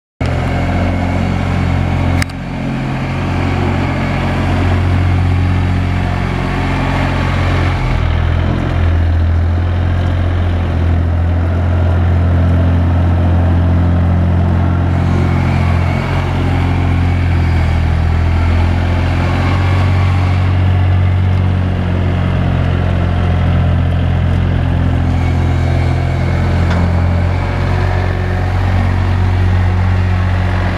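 Komatsu WA20-2E compact wheel loader's 1,200 cc three-cylinder diesel (3D78AE) running steadily as the machine drives and works its bucket.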